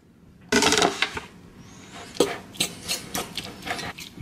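A loud clatter about half a second in, as the plastic cutting board is set down, then a metal utensil scraping and clicking against a ceramic bowl as tuna salad is stirred.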